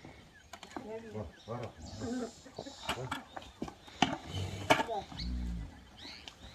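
Low, indistinct voices and a few sharp knocks, then a short, deep moo from a cow near the end.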